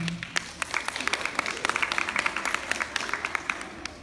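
Audience applauding with many quick, irregular claps that swell about a second in and die away near the end.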